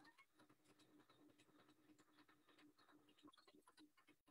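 Near silence: an electronic sewing machine stitching fabric, heard very faintly as a steady hum with quick light ticks.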